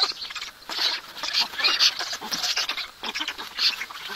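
Black stork nestlings begging to be fed: an irregular string of short, high-pitched calls, about three a second.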